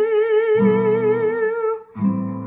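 A young female voice holds one long sung note with vibrato over an acoustic guitar, with a new strummed chord about half a second in; the note and chord stop just before the end.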